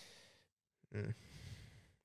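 A man breathing out in a faint, breathy sigh into a close microphone, with a short "mm" about a second in followed by another long exhale.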